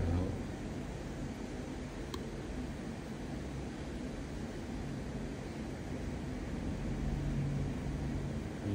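Steady low background hum of the room, with a faint click about two seconds in.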